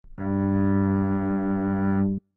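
A single low, string-like musical tone with many overtones, held at a steady level for about two seconds and then cut off: the full-length monochord string sounded as the reference tone for a demonstration of string ratios.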